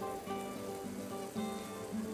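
Butter and onions sizzling softly in frying pans on a hotplate, under background music with held notes that change every half second or so.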